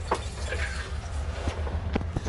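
Steady low rumble inside a moving cable car gondola, with a faint odd noise that the rider guesses is tree branches scraping against the bottom of the car.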